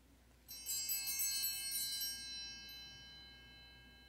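Altar bells (Sanctus bells) rung at the elevation of the host, marking the consecration of the bread. The bells are shaken for about a second and a half, starting about half a second in, then ring on and fade slowly.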